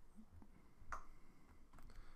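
Near silence: room tone, with one faint short click about a second in.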